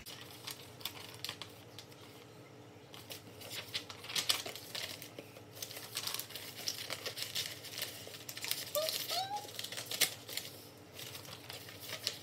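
Sheets of paper rustling and crinkling as a stack of loose pages is leafed through, in irregular bursts.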